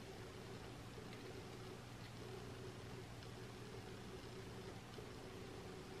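Quiet room tone with a faint steady low hum and no distinct events.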